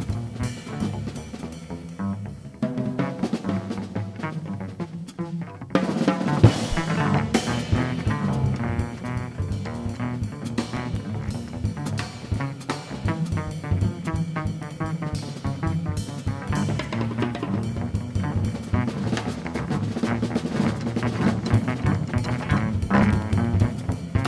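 Live free-jazz improvisation: a busy drum kit with bass drum and snare under low cello and tuba lines. A loud crash about six seconds in opens a brighter cymbal wash.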